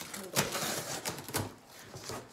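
Utility knife slicing through packing tape on a cardboard box: short crackling rips and scrapes of tape and cardboard.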